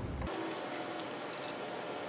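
A few faint light clicks of brass gas fittings being handled on an argon regulator, over steady low room noise.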